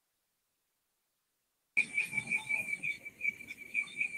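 Dead silence for nearly two seconds while the call audio is cut for a sound check. Then the microphone comes back in abruptly, carrying a steady, high-pitched trilling tone over faint room noise.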